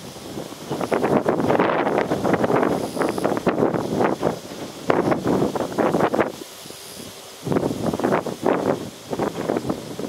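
Wind buffeting the microphone in irregular gusts, with a brief lull about six and a half seconds in.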